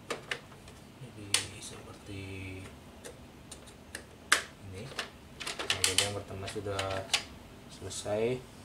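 Sharp plastic clicks and knocks as a ribbon spindle with its cardboard core is pushed and snapped into the ribbon holders of a Zebra GT820 thermal transfer barcode printer, coming in a quick cluster around six seconds in.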